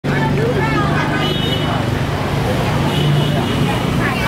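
Several people talking at once over a steady low hum, with traffic-like noise in the background.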